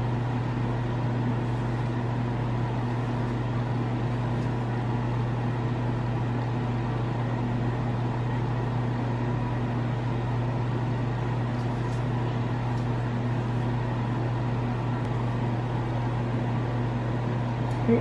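Handheld hair dryer running steadily on one setting, blow-drying protectant on the hair so the weave cap will stick.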